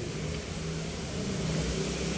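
A vehicle engine running in the background: a steady low hum.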